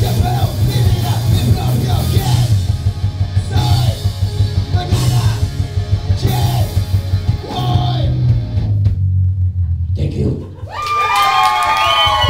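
Live Tex-Mex punk band playing: button accordion, electric guitar, bass guitar and drums under sung vocals. The band drops out about nine seconds in, and high, gliding whoops follow near the end.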